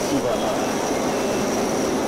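Forklift working in a cargo warehouse: a steady, loud mechanical noise with a thin, high-pitched whine running through it, and faint voices in the background.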